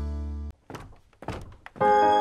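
A held music chord ends about half a second in, followed by a short lull with a handful of soft thuds. New music with a steady beat starts just before the end.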